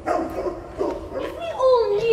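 A person sobbing: broken, wavering crying sounds, the pitch sliding down and wobbling near the end.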